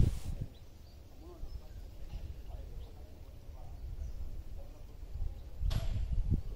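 Low wind rumble buffeting a smartphone microphone, with a few faint distant sounds above it and a short burst of noise near the end.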